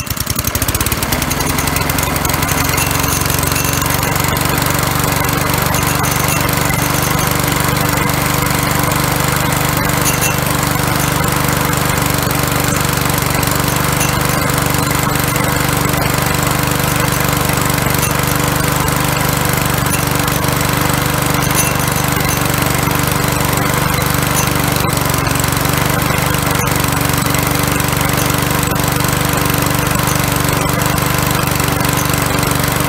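Walk-behind rotary lawnmower's small petrol engine, just started, running steadily at a constant speed with no misfire or stalling. The engine's broken flywheel and ignition-pickup mounts have been rebuilt with JB Weld, and the repair holds under running.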